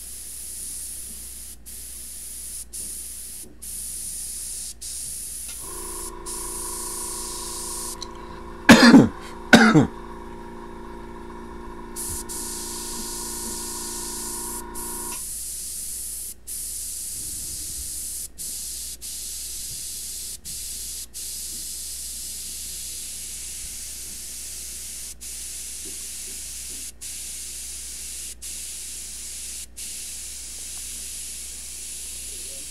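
Airbrush spraying paint: a steady high hiss, broken by many brief pauses as the trigger is let off. For about ten seconds in the middle, a steady hum of several tones runs under it, with two loud, short sounds about a second apart.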